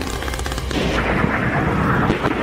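Weapons fire: a quick run of sharp firing cracks for the first half-second or so, then a loud, sustained rumbling rush of noise as a missile is launched.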